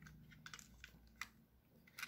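Near silence with a few faint clicks of a plastic toy engine being turned over in the hand.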